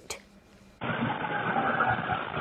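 Steady highway traffic noise, dull-sounding with no treble, starting suddenly about a second in after a brief near-silence.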